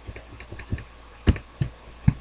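Typing on a computer keyboard: a quick run of light key taps, then two louder keystrokes in the second half.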